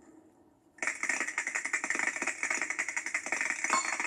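Vinyl 45 rpm single playing on a turntable: faint stylus surface noise, then about a second in the record's castanet intro starts, a fast, steady clatter of castanets.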